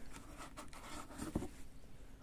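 Metal tins of cat food being handled in a cardboard box: faint rustling with a few light knocks of cans against one another and the cardboard.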